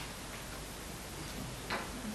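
Quiet hall room tone with a faint click about three-quarters of the way through, from handling at the lectern microphone.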